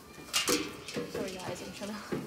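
People's voices talking, with a short sharp sound about half a second in.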